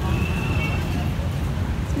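Outdoor street ambience: a steady low rumble with faint voices in the background.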